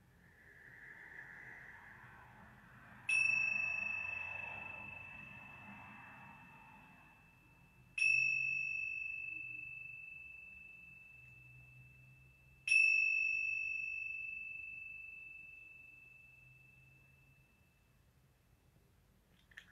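A pair of tingsha cymbals struck together three times, about five seconds apart, each strike a clear high ring that fades slowly. The chimes signal the end of the meditation and the class.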